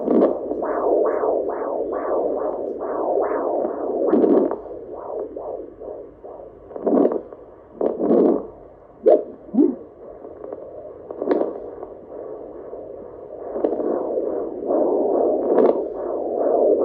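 Fetal Doppler probe picking up a 34-week baby's heartbeat: rhythmic whooshing pulses, a little over two a second. In the middle they break up into scrapes and sharp bursts as the probe shifts on the gel-covered belly, and the steady beat returns near the end.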